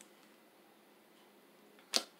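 Quiet room tone, then a single sharp slap near the end as a tarot card is laid down on the table.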